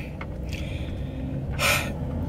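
A woman's short, sharp intake of breath near the end, over a steady low rumble in the car cabin.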